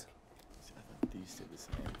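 Felt-tip marker writing on paper: faint short scratchy strokes, with a light click about a second in.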